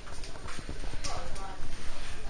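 Indistinct chatter of people talking in a busy room, with a few short clacks or knocks scattered through it.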